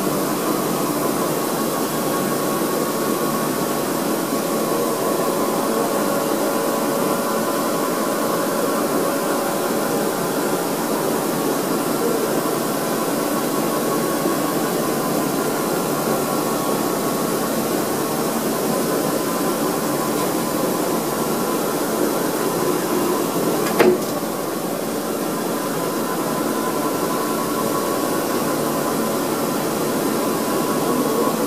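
Rotary table of a Kuraki KBT-15DXA horizontal boring machine turning under power: a steady mechanical hum with a few faint steady tones. There is a single sharp click about 24 seconds in, after which the sound is slightly quieter.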